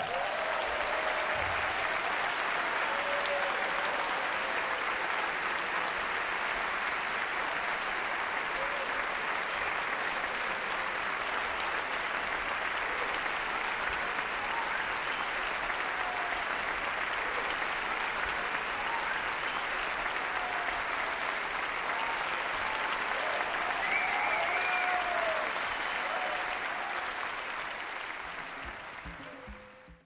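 Large audience applauding steadily after the music ends, with scattered cheers and a brief rise about 24 seconds in, fading out near the end.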